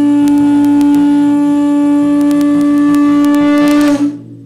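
Conch-shell trumpet (caracol) blown in one long, loud, steady note that dips slightly in pitch and cuts off at the very end.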